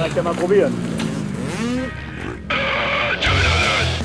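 Motocross bike engine running at high revs, coming in suddenly about halfway through after a couple of seconds of voices, and cutting off at the end.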